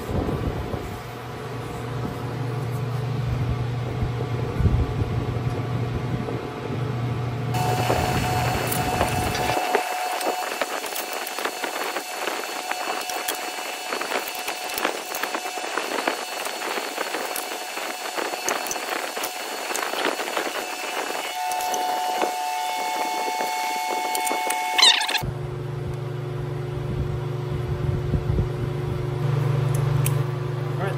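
A steady low workshop hum, then a long stretch of dense clicking and clinking of hand tools and metal parts as a stainless exhaust manifold is bolted to a Coyote V8's cylinder head. The clicking starts and stops abruptly, and the hum returns near the end.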